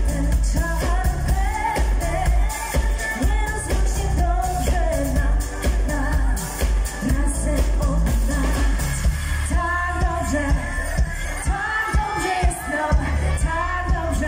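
Live pop-dance music played loud through a stage PA: a woman's lead vocal over a backing track with a heavy, steady bass beat.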